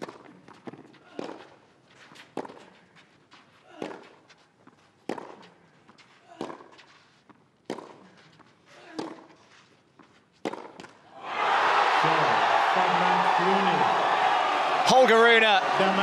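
A clay-court tennis rally in a hushed stadium: a serve and about eight racket-on-ball strokes, roughly one every 1.3 seconds. At about eleven seconds the crowd breaks into loud, sustained cheering as match point is won.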